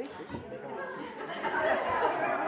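Indistinct chatter of a crowd of guests talking at once in a large hall.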